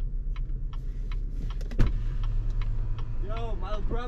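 A car's power window motor running down after a click about two seconds in, a steady low hum over the low rumble inside the 2016 Cadillac CT6's cabin. A voice starts faintly near the end.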